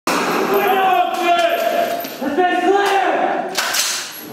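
Men shouting in drawn-out calls, with a short burst of hiss near the end.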